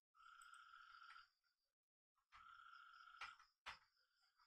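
Near silence: faint room tone with two soft, steady tonal sounds of about a second each, and a single sharp click near the end.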